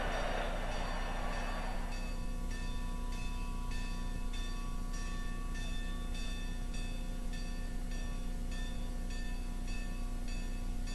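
Stadium crowd cheering that dies away over the first two seconds, then a marching band playing short rhythmic chords through a steady low hum.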